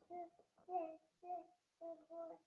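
A woman's stifled laughter behind her hand: a string of short, high, fairly even giggles, about two a second.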